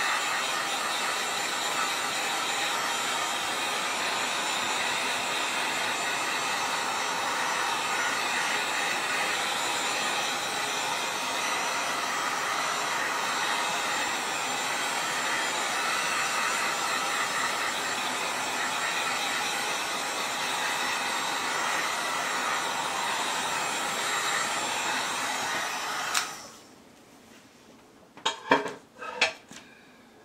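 Heat gun blowing hot air over a wet acrylic pour painting: a steady, loud rushing hiss of its fan and airflow that cuts off suddenly about four seconds before the end. A few short, light knocks follow.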